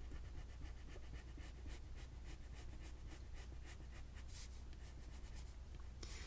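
Crayola colored pencil shading on bright white cardstock: faint, quick scratchy strokes repeating several times a second as the lead is laid down lightly.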